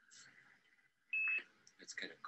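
A short, steady high-pitched electronic beep, about a quarter of a second long, just over a second in, followed at once by a voice starting to speak.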